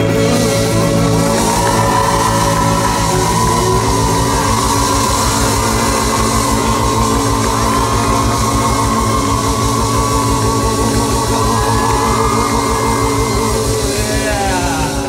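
Live band playing loud rock music with no singing: a fast, even drum beat under a long held lead line.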